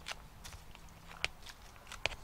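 Hand pruners snipping through the stems of old hellebore leaves: a few short, faint snips, the sharpest about a second and a quarter in.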